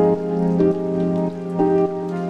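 Background music: sustained keyboard-like notes that change about every half second, at a steady level.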